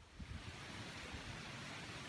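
Steady outdoor rush of wind and distant surf, with gusts of wind buffeting the microphone. It sets in a moment after the start.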